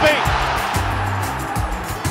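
Background music with a steady bass beat, under an even roar of stadium crowd noise from the broadcast.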